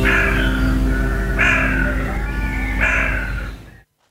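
Podcast segment jingle: music with a held chord underneath and three loud call-like sounds about a second and a half apart, fading out just before the end.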